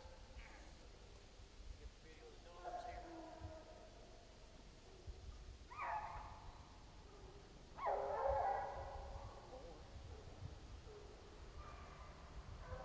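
Bear hounds baying faintly as they come up on the bear's track: a few separate drawn-out calls a couple of seconds apart, the longest lasting about a second.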